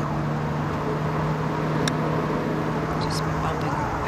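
A single crisp click, about two seconds in, of a wedge striking a golf ball on a short pitch shot, over a steady low hum.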